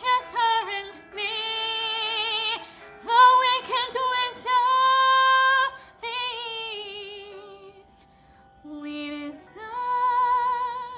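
A woman singing a musical-theatre song, holding long notes with vibrato across several phrases, with short pauses for breath between them.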